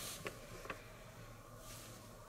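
Two faint light clicks about half a second apart, with soft rustling, as a fine paintbrush is worked against a plastic tub of thinner during hand-painting.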